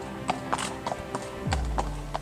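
A horse's hooves clopping on a brick path, about four sharp clops a second, over background music that drops into a low note near the end.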